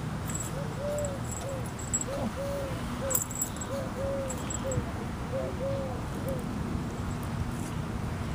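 A dove cooing: a three-note phrase, short, long, short, repeated four times at an even pace, over a steady low background hum.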